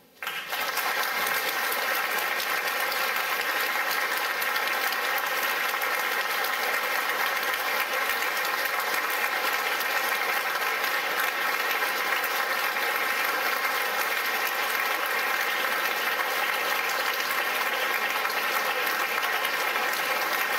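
Audience applauding in a concert hall, breaking out suddenly at the close of the piece and then holding steady and dense.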